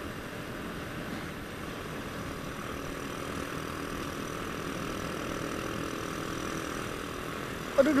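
Honda Astrea Grand's small four-stroke single-cylinder engine running steadily at a cruising speed of about 55 km/h, heard from the rider's seat, with a faint engine tone that rises slightly in the middle.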